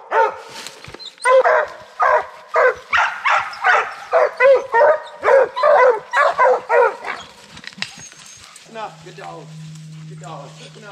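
Hunting hounds barking steadily at a treed bear, about two barks a second; the barking stops about seven seconds in. A low steady hum comes in near the end.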